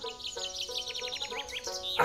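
A bird's fast run of short high chirps, about ten a second, falling slowly in pitch, over soft background music with held notes.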